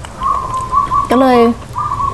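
A bird calling: a clear whistled note, held at first and then broken into a run of short repeated notes at the same pitch.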